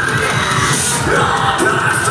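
Experimental metal band playing live at full volume: distorted guitars and fast drumming with yelled vocals over the top.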